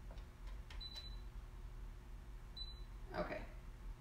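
Computerized sewing machine giving two short high beeps about a second and a half apart as its controls are pressed, with a few faint clicks, over a low steady hum; the machine is not yet stitching.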